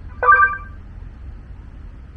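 Short electronic beep from the drone's control app confirming that video recording has started, a steady several-pitched tone about a quarter second in, lasting about half a second. A low steady outdoor rumble lies underneath.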